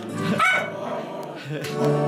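A small dog barking briefly, with a sharp yip about half a second in, over background country Christmas music.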